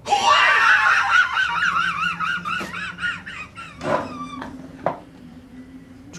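A long, high-pitched scream that wavers rapidly up and down in pitch, loudest at the start and fading out after about four seconds.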